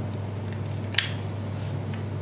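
One sharp click as the brittle bar is pushed home into a chairlift tower's derailment safety switch, resetting the switch. A steady low hum runs underneath.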